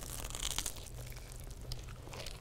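Crunch of a bite into the crisp toasted crust of a grilled cheese sandwich. A crackling burst comes in the first part of a second, followed by fainter scattered crackles.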